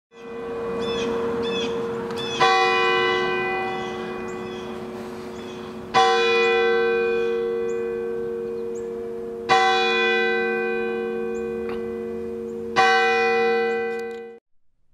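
A single church bell tolling, struck four times about three and a half seconds apart. Each stroke rings on and slowly fades before the next.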